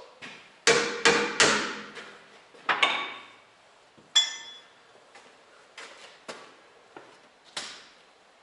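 Metal knocking and clanking on a lathe setup as parts and tools are handled: three loud, ringing knocks in quick succession about a second in, another near three seconds, a ringing metallic clang near four seconds, then a few lighter taps.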